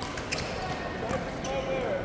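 Badminton rally: several sharp racket strikes on a shuttlecock, with short squeaks from shoes on the court floor.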